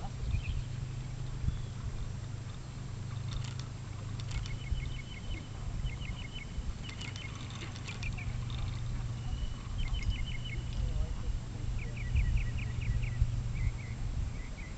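Repeated short trills of quick high chirps from a small bird, several runs of five or six notes each. Underneath is a low steady hum with rumble, and the hum drops out for a few seconds about five seconds in.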